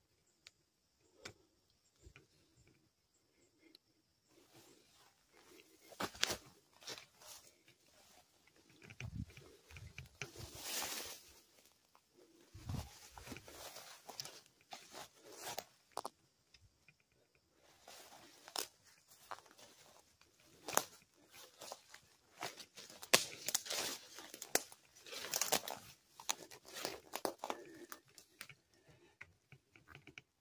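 Footsteps crunching and rustling through dry weeds and debris, with irregular crackles and scuffs and handling noise, busier in the second half.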